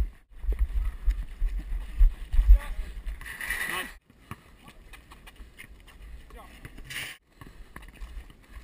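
Low, uneven rumble and thumps of wind and body movement on a head-mounted GoPro Hero 2 for the first few seconds, then quieter, with faint, distant voices of players.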